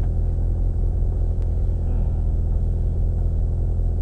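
Mitsubishi Lancer Evolution rally car's turbocharged four-cylinder engine idling steadily, heard from inside the cabin.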